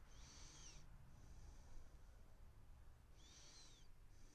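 Faint squeaky strokes of a felt-tip fine-liner pen drawn across paper: two short strokes, one at the start and another about three seconds in, over near-silent room tone.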